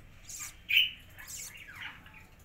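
Budgerigar squawking: one loud, harsh squawk a little under a second in, then a call that falls in pitch near the end, with brief scratchy noises between.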